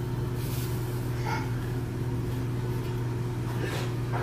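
Steady low background hum, with a few faint rustles of yarn and crocheted fabric being handled as a leaf is sewn on.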